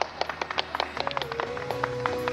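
Quick, scattered hand claps from a small audience applauding the end of a floor routine. About halfway through, music comes in, holding one steady note.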